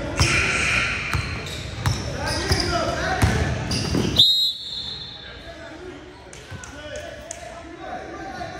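A basketball bouncing on a hardwood gym floor amid players' voices in a large echoing hall, then about four seconds in a referee's whistle blows a short blast and the play goes quieter.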